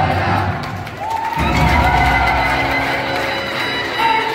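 Music accompanying a stage dance, with held melodic notes; it dips briefly about a second in, then carries on at the same level.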